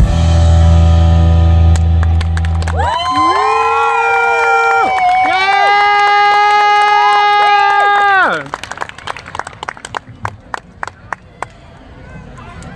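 A rock band's final held chord with the bass note sustained, then long electric guitar notes bending in pitch that slide down and cut off about eight seconds in. Scattered hand claps and crowd noise follow.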